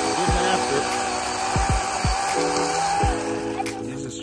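Cordless electric chainsaw running steadily with a high motor whine as it cuts a small fruit-tree branch, stopping about three seconds in. Background music plays throughout.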